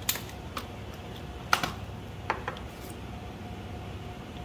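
Five or six light, sharp clicks and taps from gloved hands handling a foil-capped glass shake flask and a micropipette, the loudest about a second and a half in. A steady low hum runs underneath.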